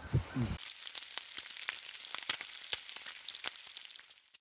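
Bacon sizzling on a hot flat-top griddle: a steady frying hiss with frequent sharp crackles and pops, starting about half a second in after a brief low sound.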